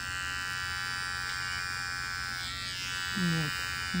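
Electric animal-hair clipper running with a steady buzz as it shears the pile of faux arctic-fox fur.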